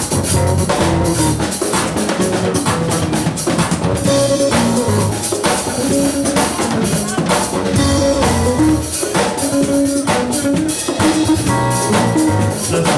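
A live band jamming in a fast gospel 'chops' style: drum kits hitting steadily, electric bass lines moving underneath, and chords on a Yamaha keyboard synthesizer.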